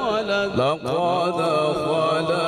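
A man's solo Quran recitation in the melodic tajweed style, amplified through a microphone: long held notes ornamented with wavering turns, with a short break near the middle before the next phrase rises in.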